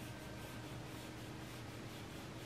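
A paintbrush stroking wet watercolor paint onto paper, a faint scratchy rubbing over a steady low hum and hiss.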